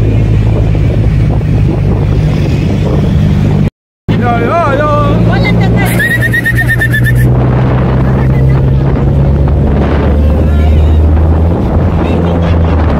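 Wind rush and the low drone of engine and tyres, heard from the open cargo bed of a pickup truck moving through traffic. The sound drops out briefly about four seconds in, and a short high warbling tone is heard soon after.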